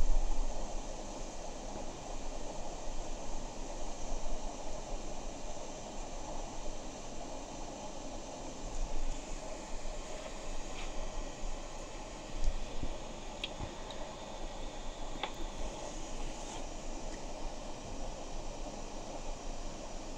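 Steady background hiss like a fan or air conditioning, with a few faint clicks and low bumps scattered through it.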